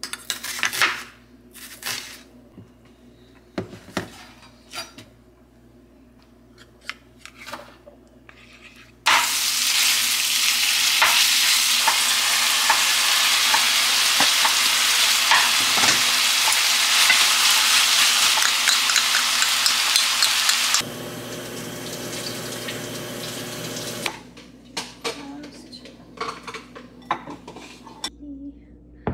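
Metal spoon clinking against a glass jar and small bowl while scooping minced garlic, then onions and vegetables sizzling loudly in a hot frying pan. The sizzle starts suddenly about nine seconds in, lasts about twelve seconds, drops to a quieter hiss, and gives way to bowls and dishes clattering near the end.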